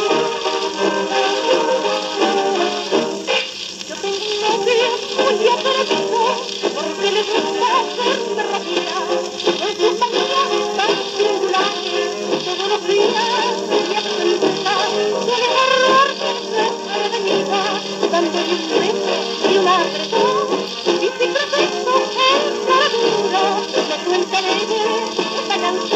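Jazz band music playing from a 78 rpm shellac record on a turntable, with a vocal refrain over the band from a few seconds in. The sound is thin, with nothing below about 150 Hz or above about 8 kHz, over an even surface hiss.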